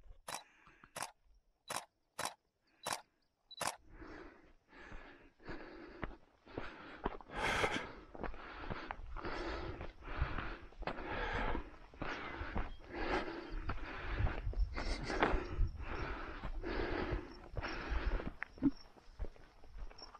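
Footsteps walking steadily up a dirt hiking trail, about two steps a second. They are faint sharp ticks at first and grow fuller from about four seconds in, over a low rumble.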